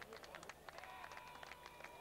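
Near silence: faint open-air ambience of a football ground, with distant voices and a few faint knocks.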